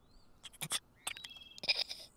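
Faint, scattered short chirps and clicks in a quiet stretch of the cartoon's sound track.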